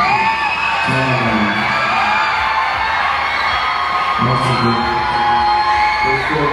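Music playing through a concert sound system, with long held notes, over shouts and whoops from a festival crowd; a man's voice calls out twice, about a second in and again past four seconds.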